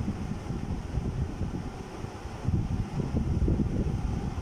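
Low, unsteady rumble of air buffeting the microphone, with no speech over it.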